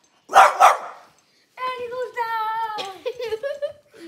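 A French bulldog barks twice in quick succession just after the start, loud and sharp. After a short pause comes about two seconds of a held, slightly wavering vocal sound at a steady pitch.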